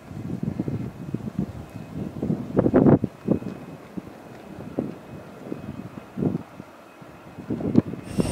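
Wind buffeting the microphone in irregular gusts, strongest about three seconds in, over a faint steady high whine from a distant taxiing jet airliner.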